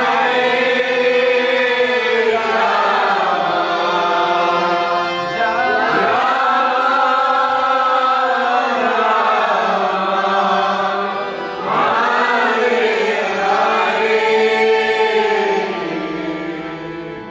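Kirtan: a group of voices chanting a devotional mantra together in long, drawn-out sung phrases, each lasting a few seconds.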